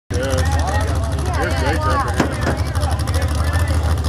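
Several people talking in a crowd over a steady low engine rumble from a mud-bog truck, with one sharp click about two seconds in.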